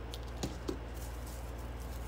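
Steady low electrical hum with two short soft clicks, about half a second and three quarters of a second in, from hands handling scissors and raffia at a craft table.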